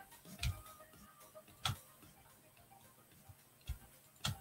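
Three sharp clicks of a computer mouse, spread over a few seconds, over faint background music.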